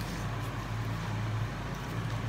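A steady low hum under faint, even background noise, with no distinct events.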